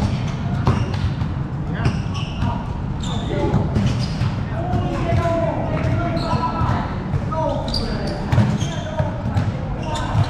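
Basketball bouncing on a hard court during play, the thuds coming at irregular intervals, with players' voices calling out over them.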